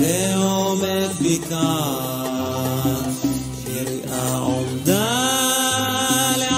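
Male cantor singing a Middle Eastern liturgical (piyyut) melody in long, ornamented phrases, with upward swoops into a phrase at the start and again about five seconds in, over instrumental accompaniment with a stepping bass line.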